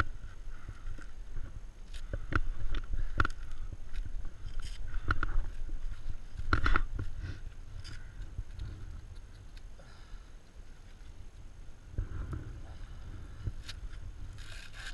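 Close handling noise: scattered clicks and knocks as first-aid gear is handled and a paper gauze wrapper is worked open, over a steady low rumble of wind on the microphone. The loudest knock comes about two-thirds of the way through.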